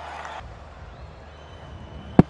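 Faint, steady background noise from a cricket stadium's broadcast feed with a low hum, between commentary; the background shifts about half a second in, at a cut.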